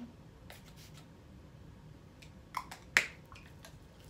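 Light plastic clicks from handling body mist bottles and caps: a few faint ticks early, then a short knock and one sharp, loud click about three seconds in.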